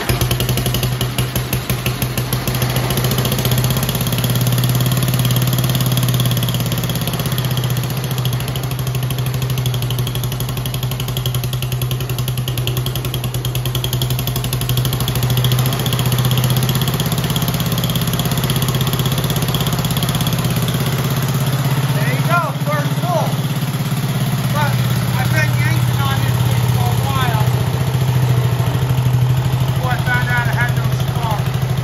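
Rugg carpet cutter's 8 hp single-cylinder engine catches on choke right at the start and then runs steadily. It starts now that its ignition points have been properly re-gapped.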